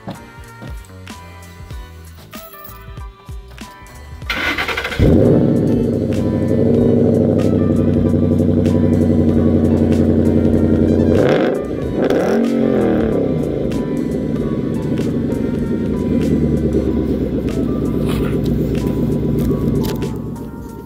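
Cold start of a Ford Mustang GT's V8, heard from behind at the exhaust: a short crank about four seconds in, then it catches and settles into a loud, steady fast idle. About halfway through the pitch briefly dips, rises and falls, then the idle steadies again.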